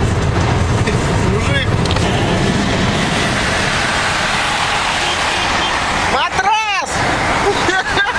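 Steady road and wind rush inside a car moving at highway speed. About six seconds in, a short pitched vocal sound rises and falls over it.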